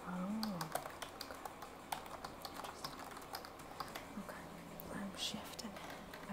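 Typing on an ergonomic computer keyboard: a run of irregular key clicks with short pauses between bursts.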